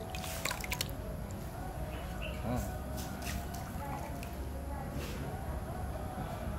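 Wet elephant-dung paper pulp being scooped and poured from a plastic measuring cup into a screen frame in water, dripping and splashing lightly, with a few short sharp clicks, most of them in the first second.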